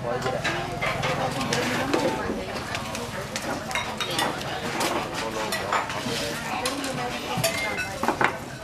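Busy food-stall chatter: several voices talking in the background, with occasional clinks of dishes and cutlery.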